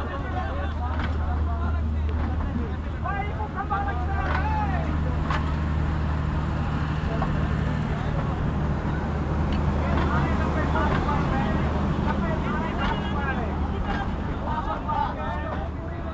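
Diesel engine of a passenger train running with a steady low drone, a second steady hum joining in for the middle of the stretch, under the chatter and shouts of a large crowd.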